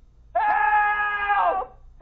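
Two voices screaming together in comic panic, one held scream of just over a second that bends down as it breaks off, with a second scream starting at the very end.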